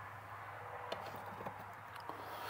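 Faint, scattered clicks and light knocks of test leads and light housings being handled on a workbench, over a low steady hum.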